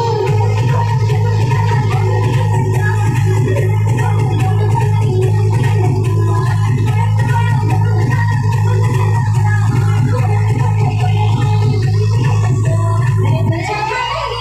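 Loud dance music through a DJ sound system, with a heavy sustained bass and a steady beat. A rising sweep builds over the last few seconds, and the bass cuts off just before the end.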